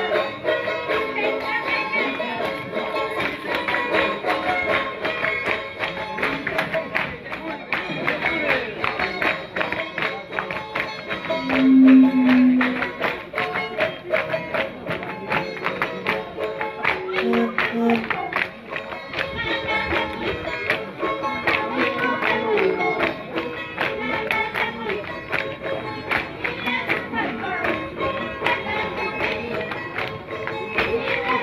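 Traditional Andean folk music for a street dance: melodic lines over a dense, quick rhythmic clatter of percussion and jingles, with a brief louder low note about twelve seconds in.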